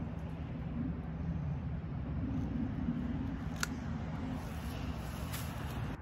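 A steady low outdoor rumble, with one sharp snip of Corona hand pruners cutting through a small apple branch a little past halfway.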